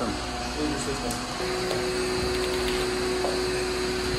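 Steady mechanical whir of a running machine, with a steady hum that comes in about a second and a half in and stops near the end, and a few faint ticks.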